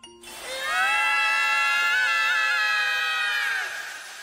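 A cartoon character's long, drawn-out scream, held for about three seconds with a slight wobble in pitch, then trailing off with an echo near the end.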